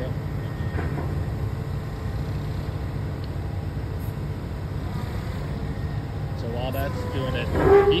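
Komatsu PC490HRD-11 high-reach demolition excavator's diesel engine running steadily at idle, a low even rumble, while its hydraulic lines are pressurized to lock the boom coupler pins.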